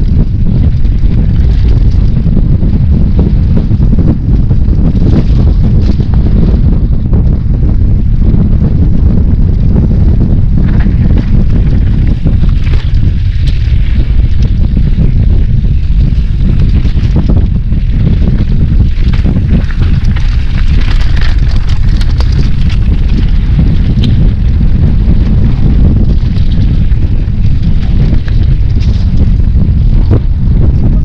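Wind buffeting the microphone of a helmet-mounted camera on a mountain bike descent, a loud, steady low rumble. Short clicks and rattles from the bike rolling over the rough dirt trail are scattered through it.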